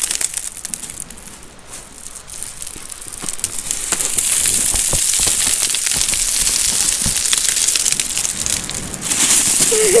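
Wellington boots crunching and clattering on loose slate shingle as a child walks down a pebble bank, a dense run of small stone clicks over a steady hiss, louder from about four seconds in.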